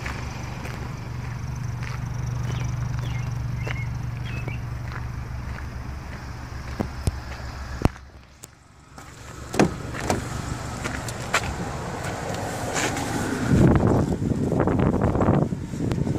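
Footsteps and handling noise around a parked Kia Optima sedan over a steady low hum. About eight seconds in there is a sharp click and the sound briefly drops, then scattered clicks and knocks build into heavier thumps and rustling near the end as someone climbs in at the driver's door.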